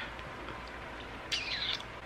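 Quiet room tone, then a brief high-pitched chirp, falling in pitch, about a second and a half in.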